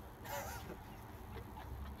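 A brief, faint stifled laugh about a quarter of a second in, over a low steady rumble.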